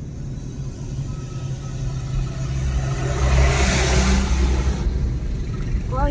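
Car engine and road rumble heard from inside the cabin while driving, with a louder rush swelling up about halfway through and dropping away shortly before the end.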